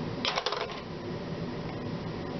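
A quick cluster of light plastic clicks and taps lasting under half a second, from small writing tools (pen, correction-tape dispenser) being handled and set down on the desk, over steady faint room noise.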